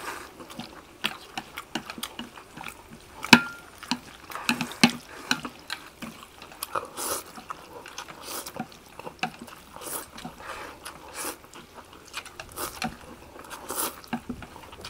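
Rice vermicelli noodles being slurped and chewed fast, with wet sucking and smacking, and chopsticks clicking against stainless-steel platters; one sharp click about three seconds in is the loudest.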